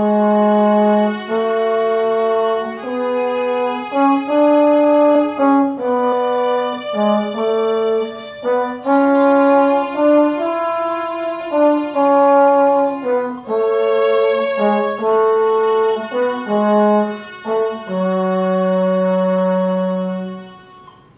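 Trombone and violin playing a slow two-part melody in F-sharp minor, the trombone on the lower line and the violin above, moving note by note in four-four time. Both settle on long held final notes near the end.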